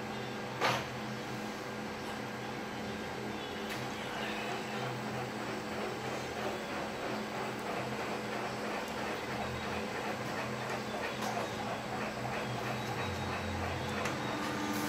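Colour office copier running a copy job: a steady whir of its motors and fans with a low hum, a click about a second in, building slightly as the sheet is carried through toward the output tray.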